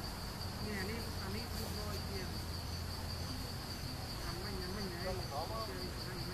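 Insects in the trees keeping up a steady, shrill, high-pitched trill, with faint wavering voice-like sounds underneath.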